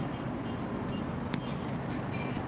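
Cars driving slowly past close by: a steady low engine and tyre rumble, with a single short click a little past the middle.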